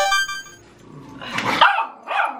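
Small terrier barking: a short high yip at the start, then a louder bark about one and a half seconds in.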